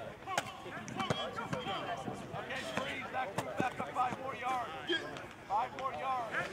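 Distant chatter of several people talking, with a few sharp thuds of footballs.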